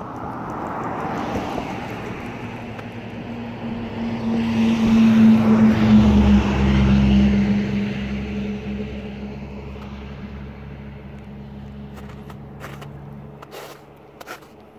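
A motor vehicle passing by: its engine and tyre noise grows louder to a peak about halfway through, the engine tone dropping slightly in pitch as it goes by, then fades away.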